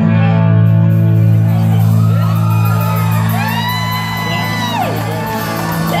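A single low note held on an amplified instrument through the concert PA rings steadily, while people in the crowd whoop and shout, their cries rising and falling in pitch from about two seconds in.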